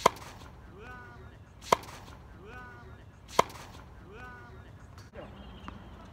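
Tennis ball struck with rackets in a rally on a hard court: three sharp hits, evenly spaced a little under two seconds apart, the first right at the start.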